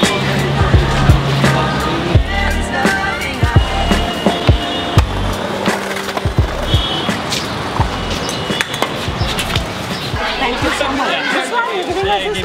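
Skateboard wheels rolling on pavement, with repeated sharp clacks of the board against the ground, over background music with a beat. People's voices come in near the end.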